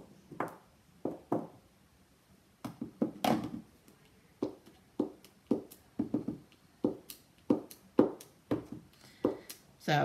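Clear stamp on an acrylic block being tapped on an ink pad and pressed onto cardstock: a run of light knocks, about two a second, starting about two and a half seconds in after a few scattered taps.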